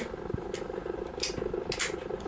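A steady low buzz throughout, with a few brief soft clicks and rustles as a small plastic pocket self-inking stamp is handled.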